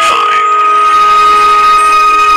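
A female singer's very high note held steady, with a lower sustained accompaniment note beneath it.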